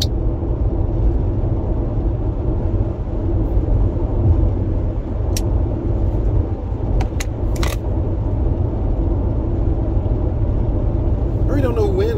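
Steady low rumble of road and engine noise inside a moving car's cabin. A few faint clicks come a little past halfway, followed by a brief hiss.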